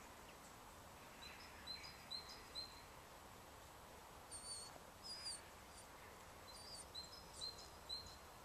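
Faint bird chirps over a quiet outdoor background, coming in three short runs of quick high notes: about a second in, around the middle, and near the end.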